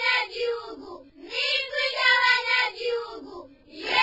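Two drawn-out, cat-like wailing calls, one after the other, each rising in pitch, holding, then falling away.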